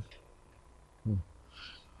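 A pause in which it is mostly quiet, broken about a second in by one brief, low hum from a man's voice, falling slightly in pitch, then a faint short hiss.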